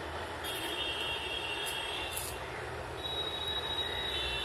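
Steady background noise, with a faint high-pitched whine that comes in about half a second in, stops near the middle, and returns near the end.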